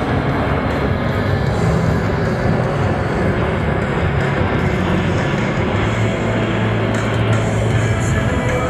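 Steady jet noise from a C-17 Globemaster III's four turbofan engines as it banks overhead, mixed with background music.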